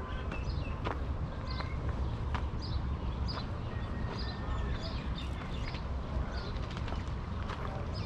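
Outdoor ambience in a date palm grove: a bird chirping in short, repeated high notes every half second or so, over a steady low rumble and soft footsteps on a dirt path.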